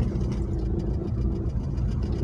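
Car engine and road noise heard from inside the cabin while driving: a steady low rumble with a faint constant hum.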